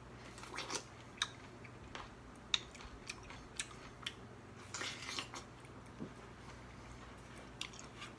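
A man biting into and chewing a whole gold kiwi with its skin on. The sound is faint, irregular wet crunches and mouth clicks, spaced a second or so apart.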